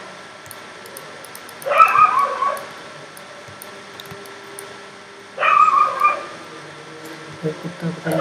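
A dog gives two short whimpering cries, each under a second, about two seconds and five and a half seconds in, over quiet room tone with faint clicks.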